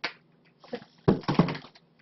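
Small metal cans of cat food knocking and clinking together as they are handled, with a few sharp knocks about a second in.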